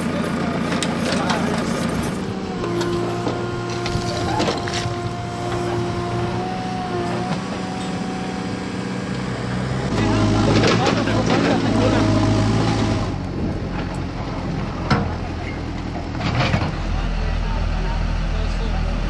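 An engine running steadily, with people's voices now and then and a few sharp knocks.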